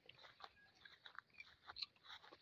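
Faint scattered crackles and rustles, footsteps and brushing through dry grass, in near silence.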